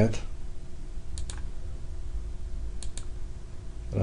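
Two pairs of short, quick computer mouse clicks, about a second in and again near the end, over a low steady hum of room or microphone noise.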